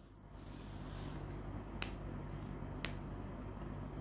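Two short, sharp clicks about a second apart over faint steady room noise.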